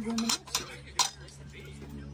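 Metal spoons and cutlery clinking against pots and dishes as food is served: a few sharp clinks, the loudest about a second in, over a steady low hum.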